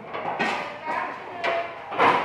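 People chatting, with a couple of sharp knocks as stacked plastic chairs are handled.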